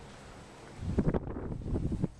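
Wind buffeting the microphone: a loud, irregular low rumble that starts a little under a second in and cuts off suddenly at the end.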